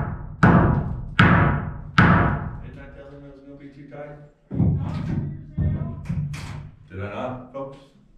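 Nails being driven into wooden framing studs: a run of sharp, ringing strikes about 0.8 s apart over the first two seconds, then quieter knocks of lumber being handled.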